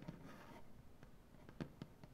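Fingernails on a wooden tabletop: a brief soft scratching just after a tap at the start, then two light, crisp taps near the end.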